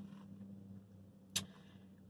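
Faint steady low hum inside a vehicle cabin, with one short click a little past halfway.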